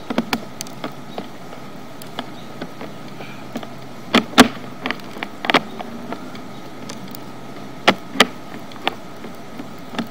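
Push-rod cable of a sewer inspection camera being pulled back out of the line: irregular sharp clicks and knocks, loudest about four seconds in and twice near eight seconds, over a steady hum with a thin high tone.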